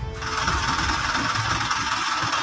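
Background music breaks off within the first half second, giving way to steady traffic and engine noise from vehicles on the road.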